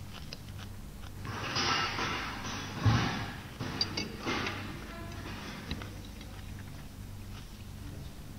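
Sounds of a meal at a table: rustling and short clicks of forks on plates, with one dull thump about three seconds in, over a low steady background.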